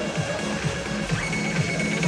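Dance music with a steady, fast kick-drum beat; a high held note comes in about halfway through.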